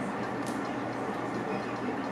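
Salon hood hair dryer running: a steady rush of fan and blowing air.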